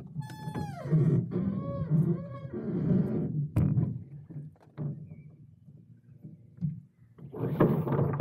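Wind rumbling on the microphone around a dinghy being rigged ashore. Early on there is a high squeal falling in pitch, then a few shorter squeaks and a click. Near the end comes a burst of rustling as rope and sail are handled.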